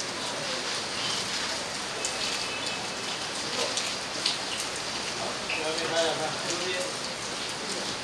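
Press photo-call room: a steady hiss of crowd noise scattered with short camera-shutter clicks, and a voice calling "lai lai lai" about six seconds in.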